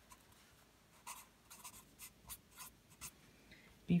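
Sharpie fine-point marker writing a word on lined paper: about a dozen short, faint pen strokes in quick succession.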